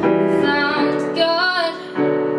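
A woman sings over chords played on a digital piano. Her voice comes in about half a second in and bends over one held note in the second half.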